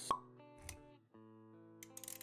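Intro-animation sound effects over music: a sharp pop right at the start, a short low thud a little after half a second, then soft held music notes.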